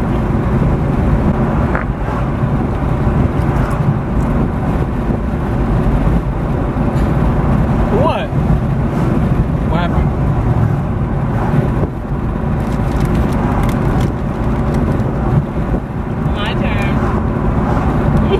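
Steady low rumble of road and engine noise inside a moving car's cabin, with a short rising squeak about eight seconds in and a brief high-pitched sound near the end.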